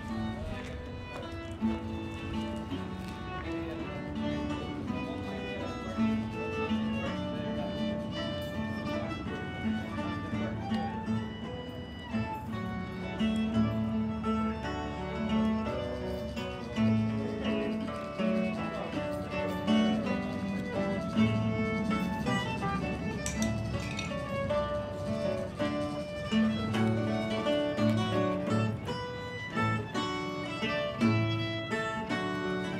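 Live acoustic folk music: a fiddle and an acoustic guitar playing a tune together, with a small plucked string instrument, going on without a break.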